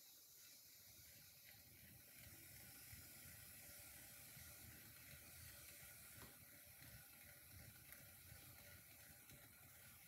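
Near silence: a faint steady hiss of a round-wire loop tool trimming a clay jar as it spins on the potter's wheel.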